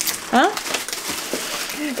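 Plastic food packaging crinkling and rustling as it is handled, after one short spoken word.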